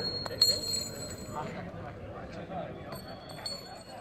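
Metal clinking: a few sharp clicks with a bright ringing tail right at the start, and a fainter ring again around three seconds in, as thrown metal game pieces strike.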